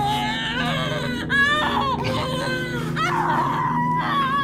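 A woman crying in high, wavering whimpers and sobbing wails that bend up and down in pitch, over a steady low drone.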